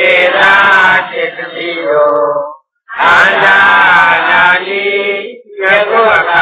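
A man's voice in Buddhist chanted recitation, with held, slowly bending tones in phrases of two to three seconds and short breaks between them.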